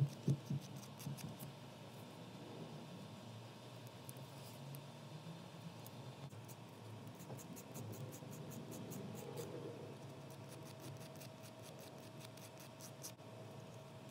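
Mini nail file rasping against the edge of a plastic press-on nail in quick, faint back-and-forth strokes, shaping an oversized press-on near the cuticle so it fits. A few soft knocks in the first second.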